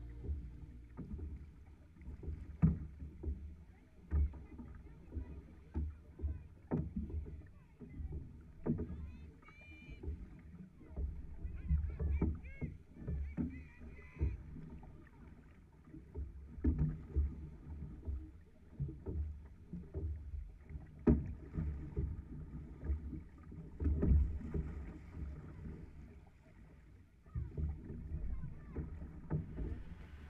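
Six-person outrigger canoe being paddled at sea, heard from the steering end: dull, irregular thumps of paddle strokes and water slapping the hull, about one every second or so.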